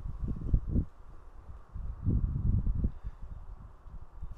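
Wind buffeting the microphone outdoors: irregular low rumbling gusts, strongest about half a second in and again around two to three seconds in.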